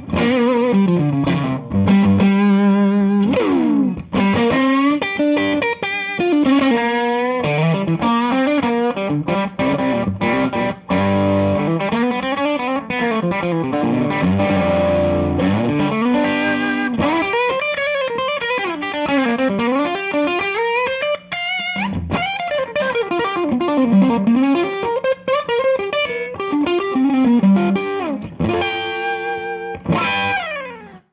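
Stratocaster electric guitar played through a Jackson Ampworks El Guapo 100-watt EL34 tube amp set to its JXN response mode, which has no negative feedback. A lead passage of single notes and runs, full of string bends and vibrato.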